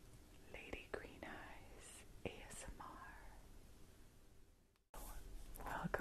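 A woman whispering softly, with a brief drop to silence about five seconds in before the whispering resumes.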